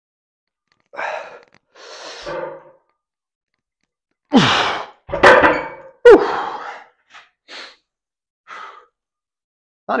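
A man breathing hard from the effort of a set of cable pulldowns: two soft breaths, then three loud sighing exhales that fall in pitch, then a few short, softer breaths.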